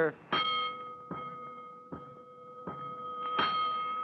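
Fire-station alarm bell struck five times, about one strike every 0.8 s, each ringing on between strikes: the five-bell signal for a five-alarm fire.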